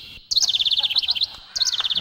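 Bird-like chirping: two bursts of rapid, evenly repeated high tweets, each opening with a quick rising note. The first starts a moment in and lasts about a second; the second starts near the end.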